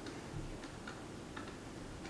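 A few faint, irregularly spaced clicks over low room noise.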